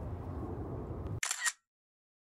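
Steady outdoor background noise cuts off abruptly just over a second in, and a brief camera-shutter click follows.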